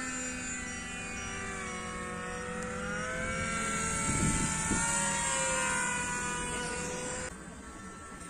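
Zagi RC flying wing's electric motor and propeller whining, the pitch falling and rising. About four seconds in it passes close by with a rush of air, and the sound drops away near the end.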